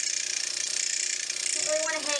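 Derminator 2 electric microneedling pen running steadily at its fast speed setting while its needle cartridge is worked in small circles over the skin.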